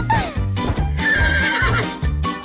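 A cartoon horse whinny sound effect for a unicorn, falling away at the start, over children's background music with a steady beat.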